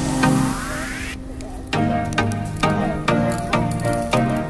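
Background music with a steady beat of about two strokes a second. A rising sweep builds and cuts off a little over a second in, leaving a short gap before the beat comes back.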